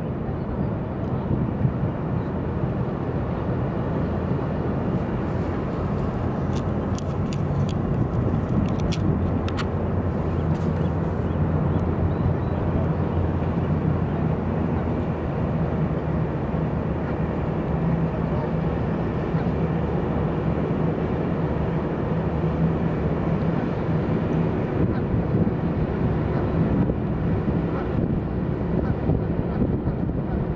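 Steady low rumble of distant road traffic on elevated freeways, with a short run of faint ticks between about six and eleven seconds in.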